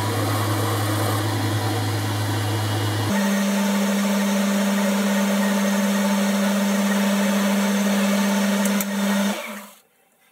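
Boxford lathe running steadily under power while the end of a bar is faced and centre drilled. Its hum jumps abruptly to a higher pitch about three seconds in, and near the end the lathe winds down and stops.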